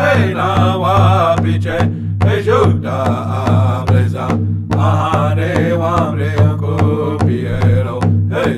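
Native American drum song: a man sings a wavering, chanted melody over a steady drum beat, pausing briefly twice for breath.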